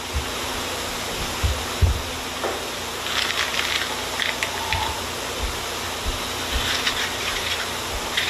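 A handheld metal press squeezing a soft material out through its holes: a steady hissing, gushing noise with scattered crackles and soft low thumps.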